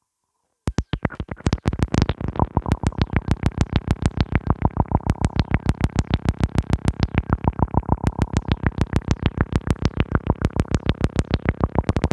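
Eurorack modular synthesizer voiced by Dreadbox modules playing a fast, even run of short repeated synth notes, about seven a second, starting about a second in.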